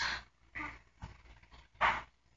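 Short, breathy puffs of air close to the microphone, one at the start and a louder one near the end, with fainter ones between: a speaker's breaths during a pause in speech.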